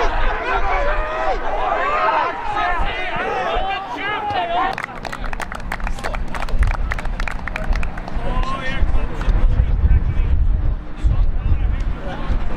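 Men's voices calling out across a football pitch for the first few seconds. Then a low rumble with rapid crackling on the microphone takes over and stays loudest through the second half.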